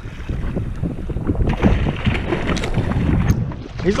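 A hooked yellowtail kingfish splashing at the surface beside a kayak, with irregular splashes from about a second and a half in, over steady wind noise on the microphone.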